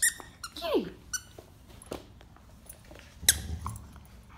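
Squeaker in a stuffed dog toy squeaking as dogs chew on it: a few short, high squeaks, the loudest about three seconds in.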